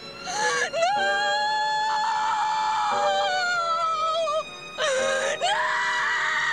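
A woman wailing in anguish: two long, high cries, broken by a short gap a little past four seconds in, over background music.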